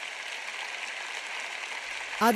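Large audience applauding in an arena, a steady even patter of clapping.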